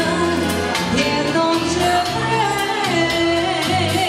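Live band music with a steady beat: a melody line over keyboard bass, from a Romanian wedding-style band.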